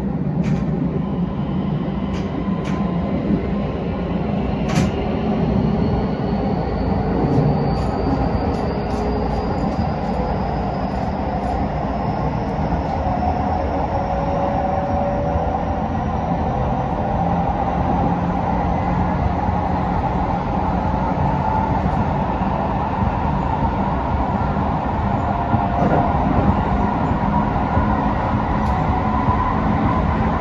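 Keisei 3100-series electric train running at speed, heard from inside the leading car: steady wheel-on-rail running noise with a faint high whine that rises slowly in pitch, typical of traction motors as the train gains speed. A few sharp clicks come in the first five seconds.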